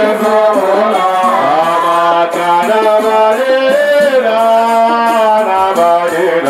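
A group of men's voices singing a Swahili qaswida together, the melody holding long notes and gliding between them, with light percussion keeping time underneath.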